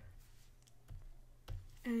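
Two short, sharp clicks about half a second apart from the digital drawing setup while a drawing is being coloured in.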